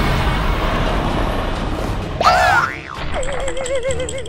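Cartoon sound effects: a dense rushing noise, then about two seconds in a sudden loud rising twang, followed by a wobbling 'boing' tone that quivers up and down.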